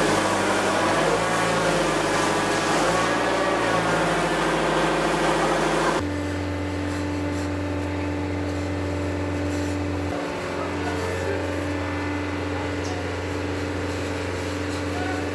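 A fire hose spraying water onto a burnt-out car, a dense hiss with voices over it. About six seconds in it cuts abruptly to a steady low engine hum.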